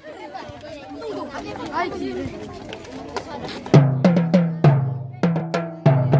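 Marching tenor drums struck with felt-tipped mallets. After a stretch of children's background chatter, a run of about eight sharp hits starts a little past halfway, each ringing with a low tone.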